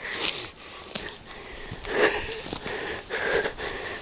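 Footsteps and brushing through dry scrub and leaf litter while walking, with a person breathing heavily through the nose. A few short louder rustles or breaths stand out, about a quarter second in, around two seconds in and a little after three seconds.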